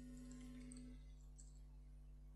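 Near silence: a few faint laptop keyboard key presses over a steady low hum.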